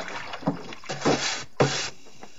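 Water sloshing and scrubbing inside a large wooden tub, in repeated uneven strokes, the strongest near the end.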